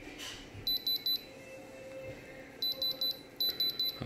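Handheld electronic diamond tester beeping in three bursts of rapid short, high-pitched beeps as its probe reads the pendant's stones as diamond.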